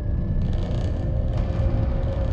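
Low, steady rumble of a car on the move heard from inside the cabin, with road or wind hiss coming up about half a second in. A steady drone tone sounds under it.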